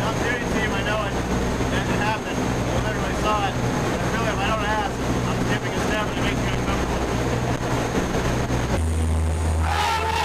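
Steady drone of an aircraft's engines heard inside the passenger cabin in flight, with voices talking over it. About nine seconds in, the engine hum turns deeper and louder.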